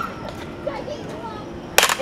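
Faint voices, then a single sharp crack near the end.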